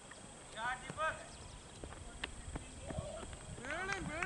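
Distant shouted calls from cricket players on the field: two short calls about half a second and a second in, then more shouting starting near the end. A single sharp knock about two seconds in.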